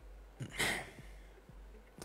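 A man sighing once into a close microphone, about half a second in.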